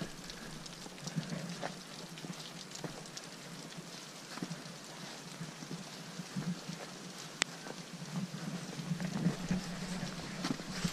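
Meltwater dripping from melting snow on a roof edge: small irregular drips pattering, with one sharper tick about seven seconds in.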